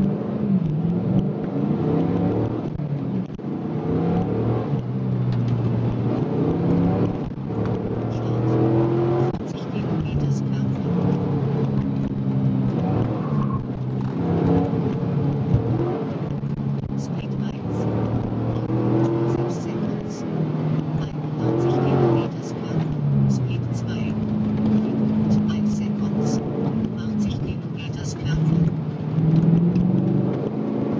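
A 4th-generation Camaro's LS1 V8 heard from inside the cabin, pulling and backing off again and again through a slalom run, its pitch rising and dropping repeatedly.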